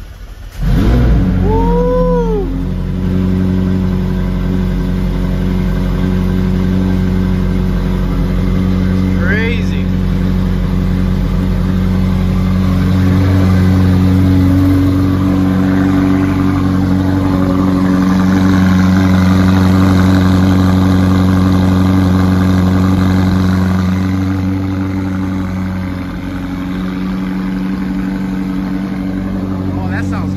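McLaren Senna's twin-turbo V8 cold starting: it catches just under a second in and flares up in revs, then falls back over about two seconds. It settles into a steady fast idle that drops a little in level near the end.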